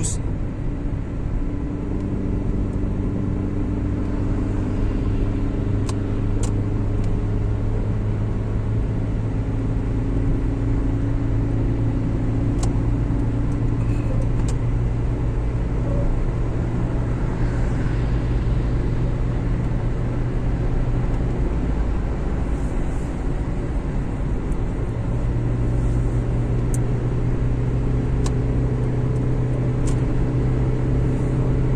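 Steady engine hum and tyre and road noise heard inside a car's cabin while cruising at motorway speed.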